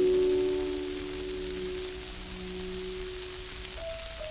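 Solo piano on a 1926 gramophone record: a chord held and slowly fading, with a new note coming in near the end, over steady record surface hiss.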